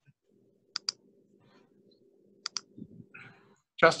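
Two sharp double clicks about a second and a half apart, over a faint steady hum. A man's voice starts just before the end.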